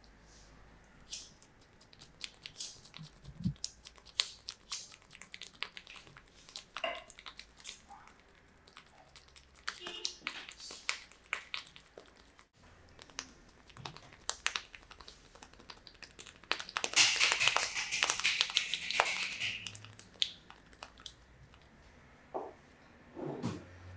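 Hands massaging a head, rubbing and pressing on hair, ears and skin, giving scattered short crackles and rustles. About 17 seconds in comes a loud, dense rustling lasting about three seconds.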